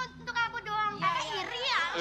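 Short, high-pitched vocal exclamations, then a woman laughing loudly with her head thrown back near the end.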